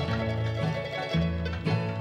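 Bluegrass band instrumental fill between sung lines: banjo, mandolin and guitar picking over a bass line that changes note about every half second.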